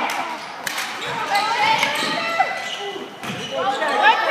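Sounds of a basketball game in a gym: a ball bouncing, sneakers squeaking on the court, and players and spectators calling out, all echoing in the hall.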